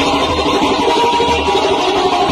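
Kurdish folk music playing, with a steady low drum beat about three times a second under sustained melody lines.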